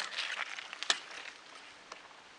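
Bicycle being ridden, its frame and mounted camera giving sharp clicks and knocks about once a second, the first the loudest, over a faint hiss of road and wind.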